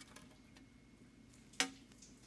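Faint scattered ticks and one sharp click about one and a half seconds in, made as the bare iPhone XS Max housing, its back glass stripped off, is handled and lifted against a metal tray holding broken glass.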